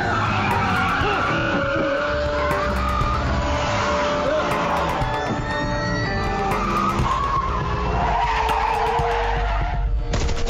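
Car tyres squealing and skidding, with engine noise, as a car slides hard through its own tyre smoke, mixed with film score music.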